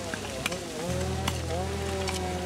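Burning undergrowth crackling and popping with irregular sharp snaps over a steady hiss. Sustained droning tones run underneath, with the low drone shifting about a second in.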